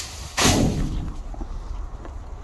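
A bag of trash thrown into a metal dumpster lands with one heavy thud about half a second in, and the bin rings and fades over about a second.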